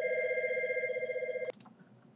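Electronic telephone ringer giving one ring: two steady tones with a fast trilling warble, cutting off suddenly about a second and a half in.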